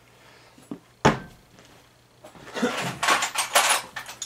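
Hand tools being handled and set down on a workbench: a sharp clack about a second in, then a couple of seconds of rattling and clinking as tools are picked through.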